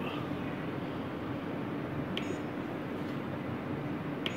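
Steady low hum and hiss of room and machine noise, with a single short click about two seconds in.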